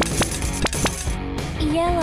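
Small plastic beads pattering and clicking as they pour into a clear plastic tub, over steady background music. Near the end a gliding tone rises and then falls.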